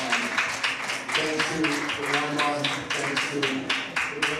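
Acoustic guitar being strummed in quick, even strokes, about five a second, over sustained chords. The strumming stops near the end.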